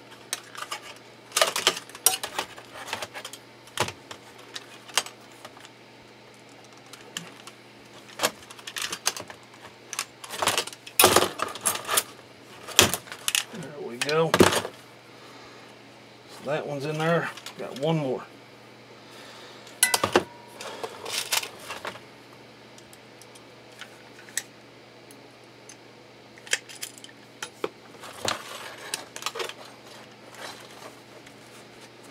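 Irregular clicks and metal clinks as a leather glove fitted with riveted copper plates is handled and worked by hand, with several louder clacks about a third and halfway through.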